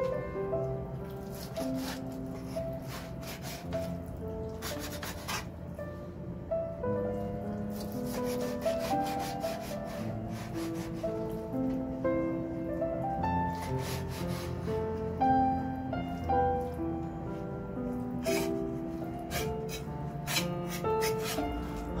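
A kitchen knife chopping raw chicken thigh into cubes on a plastic cutting board, in irregular clusters of short strokes, with the blade scraping the pieces together. Background music with a melody runs underneath.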